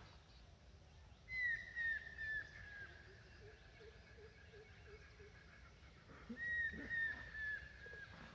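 A bird calling in the background: a run of four or five short, falling chirps about a second in, and another run near seven seconds, with a fainter, lower series of notes in between.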